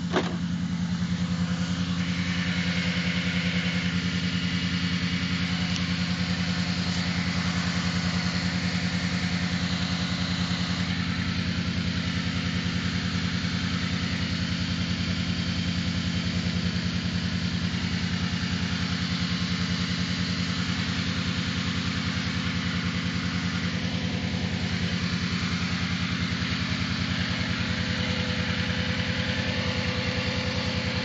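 A 2002 Chrysler Concorde's engine idling steadily, heard close up in the engine bay, with a hiss over it. The owner finds the idle a bit high and inconsistent and suspects a major vacuum leak. A sharp click comes right at the start.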